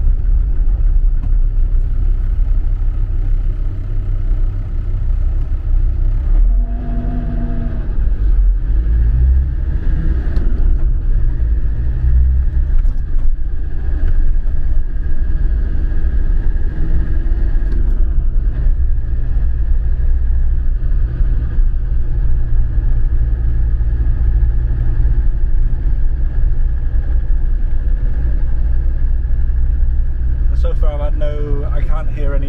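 Cab noise of a 2002 Land Rover Defender 90 on the move, its Td5 five-cylinder turbodiesel running with a steady low drone under road rumble.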